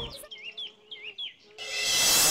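Birds chirping in a quick series of short repeated chirps; near the end a loud, steady rushing noise swells in and becomes the loudest sound.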